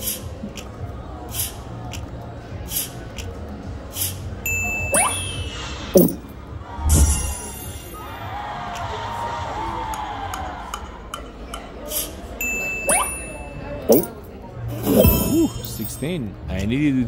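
Video slot machine spinning its reels: a regular run of clicks about twice a second with high dings and a short chiming melody from the game.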